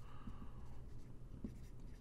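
Faint strokes of a dry-erase marker writing a word on a whiteboard.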